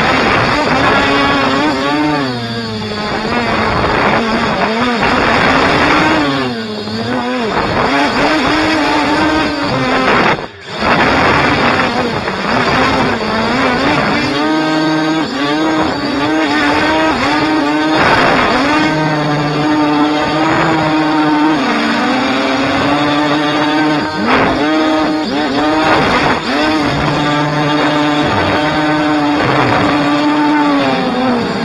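Quadcopter drone's electric motors and propellers buzzing in flight, the pitch rising and falling again and again as the throttle changes, with a brief drop about ten seconds in.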